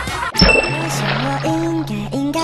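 A bright, ringing ding sound effect about half a second in. Music then starts under it, with a steady low drone and a melody line.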